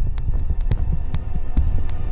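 Tense film underscore: a low, throbbing drone with a heartbeat-like pulse and sharp clicks at irregular intervals.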